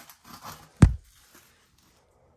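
Handling noise: faint rustling, then one sharp, heavy thump a little under a second in.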